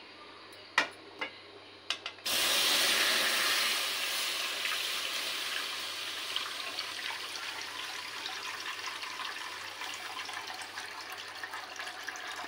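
A few light knocks, then from about two seconds in a steady stream of milk pouring from a glass jug into an aluminium karahi. It starts suddenly, is loudest at first and slowly eases off as the pan fills.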